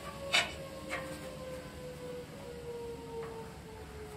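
A few light clicks of steel on steel as a flat bar is handled against the sheet-steel box, the first about a third of a second in and the loudest. A faint steady hum slowly drops in pitch underneath.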